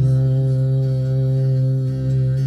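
A man's voice holding one long, steady sung note over bağlama (long-necked Turkish saz) accompaniment.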